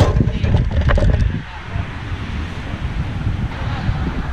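Wind buffeting the camera microphone. In the first second and a half there are a few knocks and rattles as a pumpkin is handled on the wagon's metal mesh bed.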